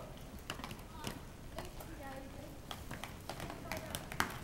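Inline skate wheels rolling on rough asphalt, with an irregular run of sharp clicks and knocks as the skates set down and push off.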